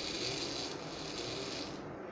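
Small 9-volt geared DC motors of a string-driven animatronic hand running for almost two seconds, a rasping whirr that stops shortly before the end.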